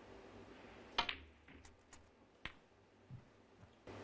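Snooker balls clicking during a shot. About a second in comes a sharp click as the cue ball is struck and meets the ball beside it, the loudest sound; a second sharp click of ball on ball follows about a second and a half later, then a soft knock.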